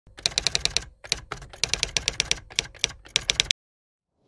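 Rapid typing clicks, keys struck in quick runs of several a second with short gaps between runs, stopping abruptly about three and a half seconds in.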